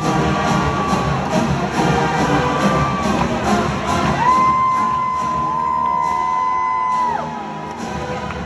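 Marching band brass and percussion playing, with a steady drum and cymbal beat in the first half. A long held brass note follows and drops away near the end.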